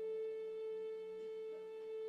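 A flute holding one long, steady note within a slow melody.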